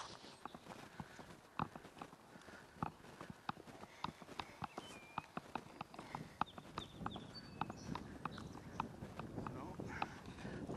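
Irregular light clicks and taps, a few a second, from a camera that is loose on its tripod mount rattling as it is moved and panned.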